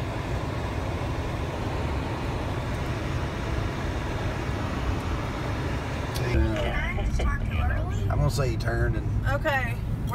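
A car driving on a snow-covered road, heard from inside the cabin: a steady rumble of road and engine noise. About six seconds in, voices start talking over it.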